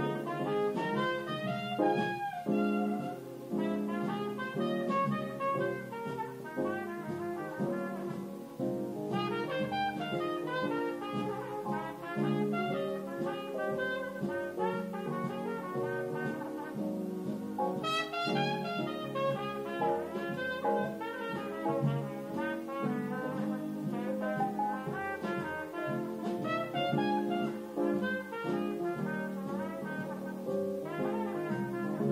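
Instrumental break in an early-1950s jazz ballad recording: a cornet plays the melody over piano and a string section, with no singing.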